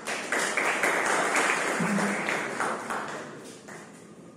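Audience applauding, starting suddenly and fading out toward the end.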